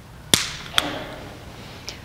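Consecrated communion bread being broken: two sharp snaps about half a second apart, then a faint click near the end.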